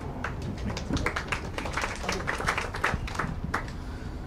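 Scattered hand clapping from a small audience: a string of irregular sharp claps that dies away a little before the end.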